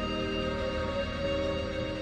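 Background music of long held notes layered in steady chords.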